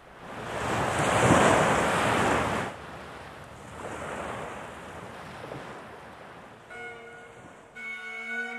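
Sea waves washing onto a shore: one large wave swells and breaks in the first few seconds, then a smaller one follows and fades away. Near the end, bagpipes start playing a held chord.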